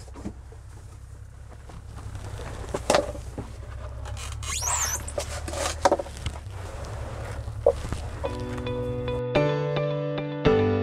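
Handling noises as a walleye is laid on a plastic measuring board: a few sharp knocks and a brief high squeak over a steady low hum. Guitar music comes in near the end.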